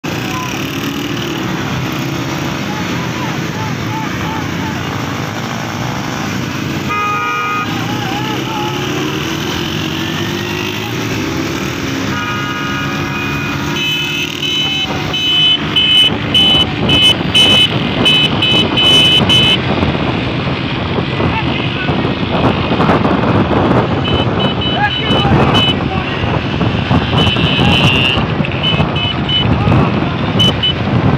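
Motorcycles running alongside horse carts, with vehicle horns sounding. From about halfway through, the horns beep in quick repeated bursts.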